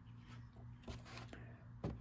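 Quiet room with a steady low hum and a few faint clicks as a tarot card is lifted off a cloth-covered table.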